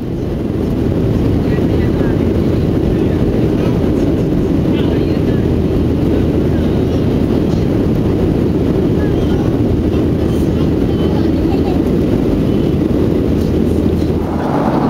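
Steady cabin roar of a Southwest Airlines Boeing 737 in flight, heard from a window seat: a dense low rumble of jet engines and rushing air, swelling up over the first second. The plane is low over the coast soon after leaving Los Angeles, so the engines are likely at climb power.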